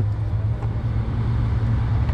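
Steady low hum of an idling vehicle engine, with faint road-traffic noise.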